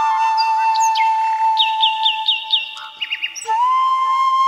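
Bamboo flute holding one long, steady note while birds chirp over it: a quick run of five descending chirps near the middle, then three more shortly after. Near the end the flute moves to a new, slightly higher note.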